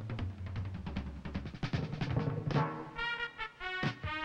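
Orchestral soundtrack music: timpani rolling and striking, then brass chords entering about three seconds in.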